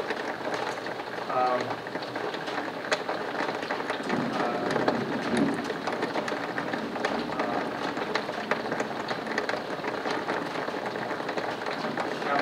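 Quiet meeting-room ambience with faint, brief murmured speech and scattered small clicks and rustles of paper being handled.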